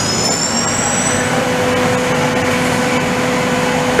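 Fanuc Robodrill Alpha D21MiB5's 24,000 rpm spindle running free, speeding up from 15,000 toward 20,000 rpm: a high whine rises over about the first second, then holds steady. It sits over loud background noise from adjacent machines.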